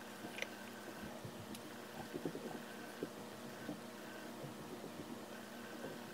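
Quiet room tone with a faint steady hum, broken by scattered small clicks and taps as fingers handle a glued false-eyelash strip.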